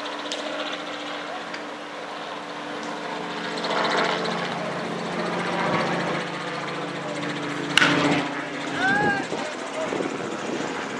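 A bat strikes a pitched baseball with a single sharp crack about eight seconds in, and shouts follow right after. A steady engine drone hums underneath.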